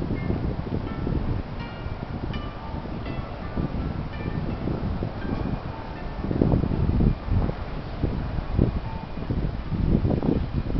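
Chime-like music: short bell notes at several different pitches ring out one after another, over a low rumble of wind on the microphone that swells a little about six seconds in.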